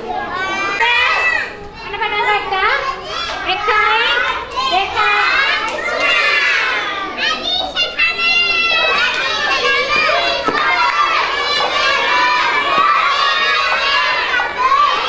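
Many young children chattering and calling out at once, their high voices overlapping without pause in a large hall.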